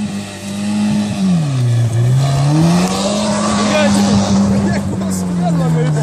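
Car engine held at high revs on loose gravel, dropping about a second and a half in, climbing back up and then slowly easing off near the end. A hiss of tyre noise and spraying gravel runs under it in the middle.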